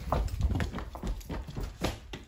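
Quick, uneven footsteps of two children running along a corridor floor, growing fainter near the end as they move away.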